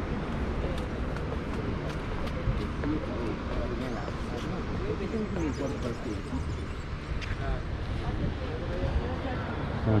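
Steady low outdoor rumble with faint, indistinct voices talking now and then.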